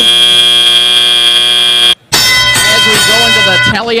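Competition field's electronic buzzer, loud and steady, marking the end of the autonomous period; it cuts off abruptly about two seconds in. After a brief break a second, different steady signal tone sounds for nearly two seconds as the driver-controlled period begins.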